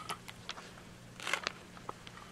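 A few faint, scattered clicks and rustles of snacks being handled in a small plastic bowl as a hand picks some out.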